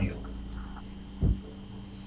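Steady low electrical hum with a faint thin high tone in the recording's background, and one short low thump a little over a second in.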